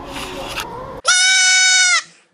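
A baby goat bleating: one long, high, loud call that starts about a second in, holds steady and breaks off abruptly. It is preceded by a second of indistinct indoor background noise.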